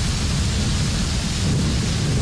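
Heavy rain pouring steadily, with a low rumble underneath.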